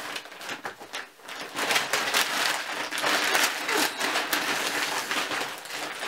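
Crinkly rustling and crackling of a shopping bag and paper wrapping being rummaged through, starting softly and getting denser and louder about a second and a half in.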